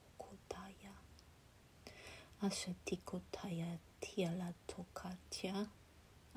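A voice uttering strings of channelled light-language syllables in short phrases, with a brief pause about a second in.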